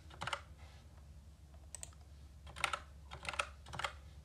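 Typing on a computer keyboard: short runs of quick keystrokes with pauses between them.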